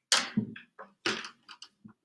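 A handful of short knocks and thunks from objects being handled and set down on a table. The first, right at the start, is the loudest.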